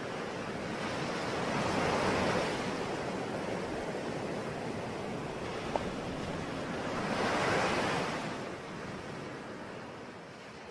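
Recorded ocean surf: two waves swell and wash away, the second about five seconds after the first, with no music yet. It begins to fade near the end.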